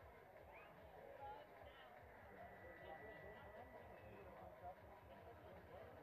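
Near silence: faint outdoor ballfield ambience with distant, indistinct voices.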